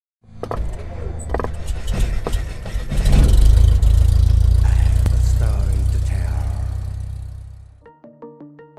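Animated logo-intro sound effects: a few sharp clicks in the first couple of seconds, then a loud deep rumble that builds about three seconds in and fades out near the end.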